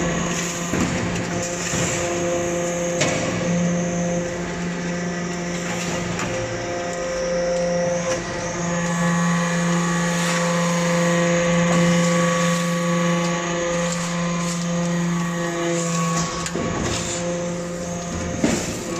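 Swarf briquetting press and its chip conveyor running with a steady, many-pitched machine hum. A few brief scrapes and clatters of metal chips being shovelled onto the conveyor sound over it.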